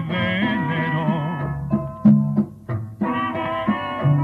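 Band music by a Nicaraguan dance band: a melody line over bass notes and percussion. About a second and a half in, the melody breaks off, leaving a few bass notes and sharp accents, and it comes back about three seconds in.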